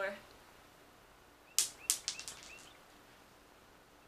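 A small plastic die dropped on the floor: a sharp clack, a second hit, then a quick run of fainter, faster clicks as it bounces and rattles to rest.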